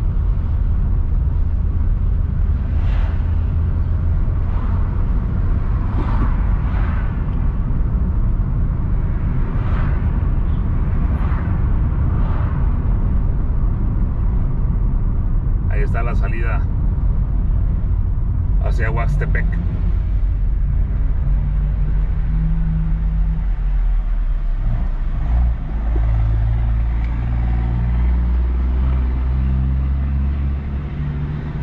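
A car driving along a town street: a steady low rumble of engine and road noise. Two short pitched sounds come about three seconds apart just past the middle. A steady engine hum joins in over the last third.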